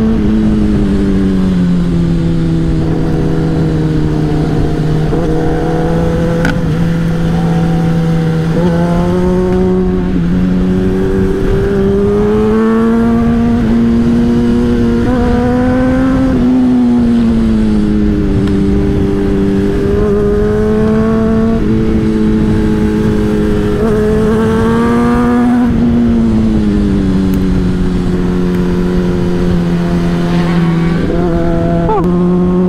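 Honda CBR600RR's inline-four engine running at steady mid revs while riding, its pitch easing up and down a few times, over a steady rush of wind noise.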